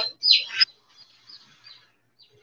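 A bird chirping: one loud high call falling in pitch just after the start, then a few faint short chirps.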